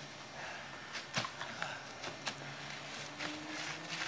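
Faint scuffling of wrestlers moving and grappling, with a few short, sharp knocks or slaps, the loudest a little over a second in, over a faint low hum.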